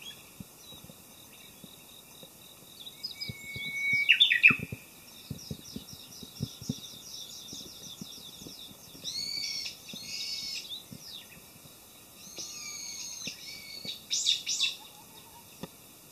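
Wild birds singing and calling in woodland: a loud burst with a sharp falling note about 4 s in, a rapid high trill after it, repeated arching phrases around 9–10 s and 12–13 s, and another loud burst of quick falling notes near 14 s.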